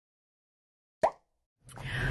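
Silence, then a single short pop about a second in. Near the end the low rumble of a car's cabin fades in.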